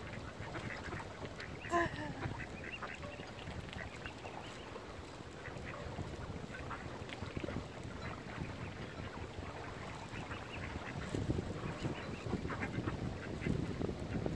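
Mallard ducks quacking in many short calls, with one louder call about two seconds in.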